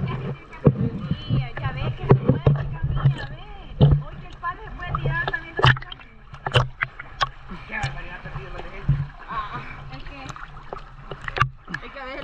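Water sloshing and splashing against a camera held at the water's surface as swimmers move through the water, with many short sharp splashes and a recurring low rumble. Faint voices come through in between.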